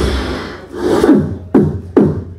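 Live beatboxing into a microphone cupped in the hand. A buzzy bass sound fades out, a rasping sweep rises in pitch, and then two sharp percussive hits come about half a second apart near the end.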